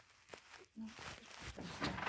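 Faint rustling and handling of a large paper poster as it is taken down off a wall, with a few light clicks, building up near the end.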